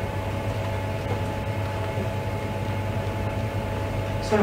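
Steady low electrical hum with faint steady tones and hiss: the background room tone of a courtroom microphone feed in a pause in speech.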